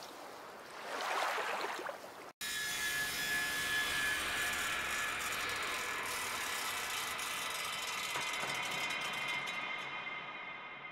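Two swells of rushing noise like surf, then an abrupt cut to a production-logo sound effect: a dense mechanical, sawing-like whir with a slowly falling tone that runs until near the end.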